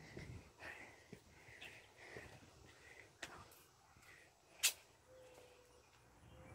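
Quiet outdoor background with a few faint taps and two sharp clicks, the louder one about two-thirds of the way through.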